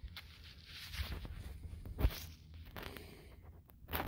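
Soft rustling and scraping of soil and grass as dirt is worked over to recover a metal-detecting target, with a sharp click about two seconds in.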